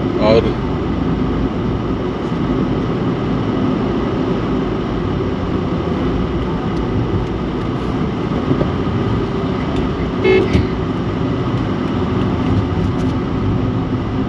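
Steady engine and road noise heard from inside a moving car on a highway, with one short horn toot about ten seconds in.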